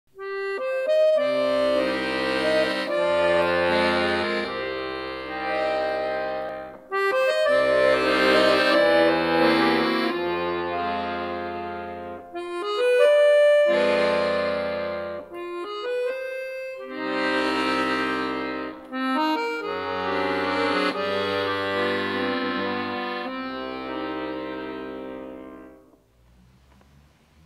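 Accordion playing sustained chords over held bass notes, in phrases broken by short pauses, fading out near the end.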